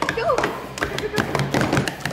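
Plastic sport-stacking cups tapping and clattering quickly and irregularly on a tabletop as children stack and unstack them at speed in a race.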